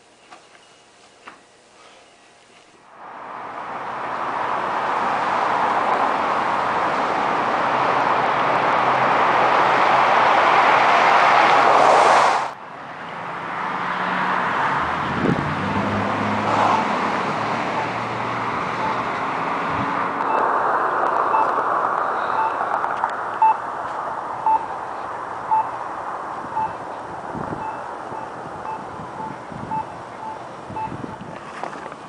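Street traffic noise, with a short high electronic beep repeating evenly a bit under twice a second through the last third. Before it, a broad rushing noise builds for several seconds and then cuts off abruptly.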